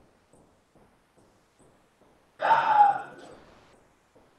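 Silence, then about two and a half seconds in, one short breathy vocal sound from a person, under a second long and falling in pitch, like a sigh or hesitation noise in a pause between words.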